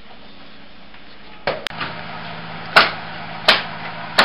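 Hammer blows nailing stucco wire lath (chicken wire) to a wrapped house wall: a few sharp strikes roughly three-quarters of a second apart, starting about a second and a half in, over a faint steady hum.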